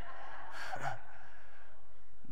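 A man's short breath into a headset microphone during a pause in speech, over faint steady room noise.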